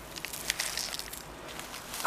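Gloved hand scooping forest-floor leaf litter, twigs and soil into a plastic bucket: dry debris rustling and crackling, with a run of small sharp clicks in the first half.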